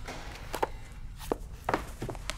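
A handful of soft knocks and taps, about five in two seconds, over a faint steady low room rumble.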